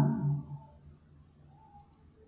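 The last of a woman's spoken word fading out in the first half second, then quiet room tone with a faint steady low hum.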